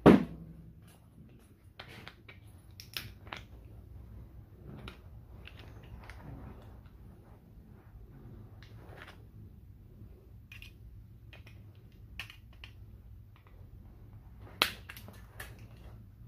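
A flat-head screwdriver prying at a stove knob switch: scattered small clicks, taps and scrapes of the tool on the metal and plastic part. A loud knock comes right at the start, and a sharper click near the end, just before the piece comes open.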